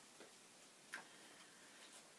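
Near silence with a few faint clicks and rustles of loose paper sheets being handled, the clearest about a second in.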